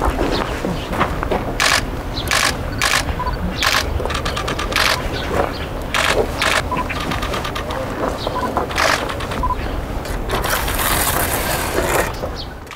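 A stone being set by hand into wet mortar and a mason's trowel working the mortar: a string of short knocks, clicks and scrapes at uneven intervals, over a steady low rumble of wind on the microphone.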